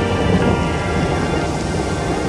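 Background music of slow, held notes over a rain-and-thunder soundscape: a steady patter of rain with a low rumbling of thunder beneath.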